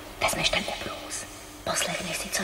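Whispered speech between a woman and a young girl, with sharp hissing consonants.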